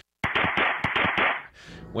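Body-camera audio from a struggle in the field: dense rustling and scraping against the microphone with a rapid run of knocks, thin and muffled. It cuts in abruptly and fades out after just over a second.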